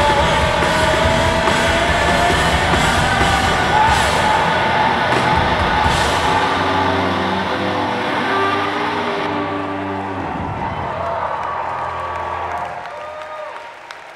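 Live rock band with drums, electric guitars, bass and a sung vocal line playing the last bars of a song, with cymbal crashes about four and six seconds in. A final chord is then held and rings out, fading away over the last few seconds.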